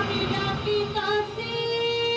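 A woman singing a Bengali Baul folk song into a stage microphone, with musical accompaniment. Her voice slides between notes, then holds one long note near the end.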